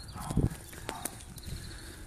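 A bicycle being ridden, giving a few scattered sharp clicks and a low knock over a low rumble.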